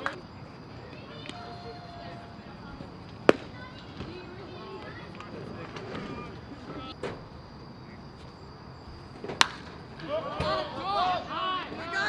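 Two sharp cracks at a baseball game, about three seconds in and about nine seconds in; the second is a bat hitting a pitched ball and is followed by players and spectators shouting. Faint distant voices lie underneath.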